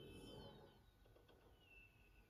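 Near silence, with a few faint high thin tones near the start and one faint downward-gliding tone around the middle.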